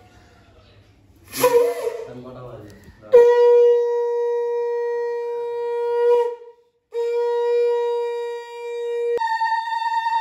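A conch shell (shankha) blown in long, steady blasts: a held note, a short break, the same note again, then it jumps up an octave to a higher note near the end. A brief wavering sound comes before the first blast.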